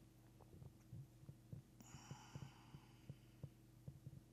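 Near silence: room tone with a low steady hum and faint soft ticks, about three to four a second.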